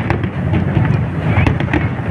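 Fireworks display with many shells bursting in quick succession, sharp bangs over a continuous rumble of overlapping reports.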